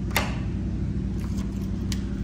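Key turning in a door deadbolt to lock it: a sharp metallic click just after the start, a few faint key rattles, and another click near the end as the bolt is thrown, over a steady low hum.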